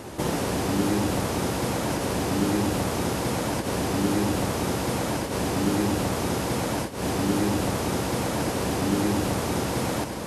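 Heavily amplified hiss of background noise with a faint, low, murmur-like sound repeating about every second and a half, presented as an EVP of a deep male voice saying "we used to play" played on a loop.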